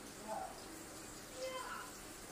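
Faint, indistinct voice sounds, two short bursts, over quiet room tone.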